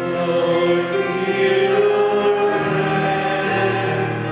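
A church choir singing long held notes, the chord moving to a new pitch about two and a half seconds in and again about a second later.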